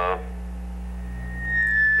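A single steady high-pitched electronic tone comes in about a second in and swells, then holds, over a steady low electrical hum.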